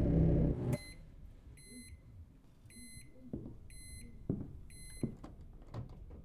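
A loud low sound cuts off suddenly about half a second in. Then a short, high electronic beep repeats about once a second, five times, with a few soft knocks in between.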